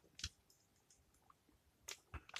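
Near silence: quiet room tone with a couple of faint, short clicks, one about a fifth of a second in and another near the end.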